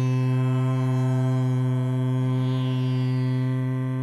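A steady musical drone held on one low pitch, rich in overtones, as background music before a chant.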